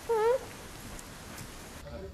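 A woman's short, high-pitched wordless cry, dipping then rising in pitch, right at the start, over a steady hiss of background noise that drops away near the end.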